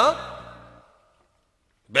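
A man calling out "Miyan!" with his voice rising in pitch, over the fading end of the background music. Then about a second of dead silence.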